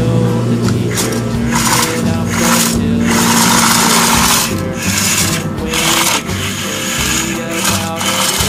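Small electric motor of a wired remote-control toy loader whirring on and off several times as the toy drives, the longest run about three to four and a half seconds in, over background music.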